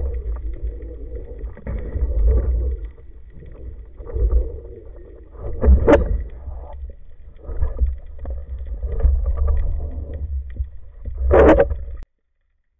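Muffled underwater noise from a camera on a speargun: a low rumble of water moving against the housing that swells and fades every second or two. There are sharper knocks about six seconds in and again near the end.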